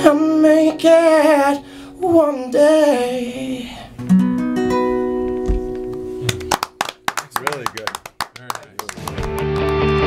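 A man singing to his own strummed steel-string acoustic guitar. The song ends about four seconds in on a ringing guitar chord, followed by a few quieter seconds of scattered clicks. A different, fuller piece of music starts near the end.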